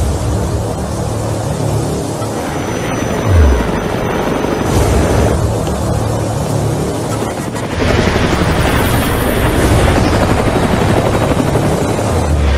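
Action-film soundtrack: a helicopter's rotor chopping steadily under music, with a single low boom about three and a half seconds in.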